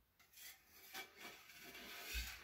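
Faint rubbing and scraping strokes, several in a row, of something being dragged over a painted surface.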